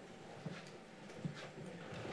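Faint footsteps of a man walking, with two soft steps standing out over quiet room tone.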